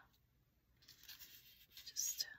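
Faint rustling and rubbing of paper scraps being slid and shifted by hand on a paper card. It starts about a second in, after near silence.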